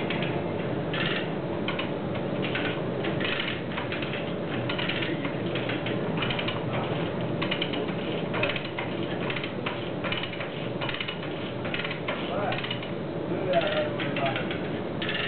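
Manual chain hoist being worked, its ratchet clicking in a steady run of about two rasps a second while it holds the truck engine hanging from it. A steady workshop hum runs underneath.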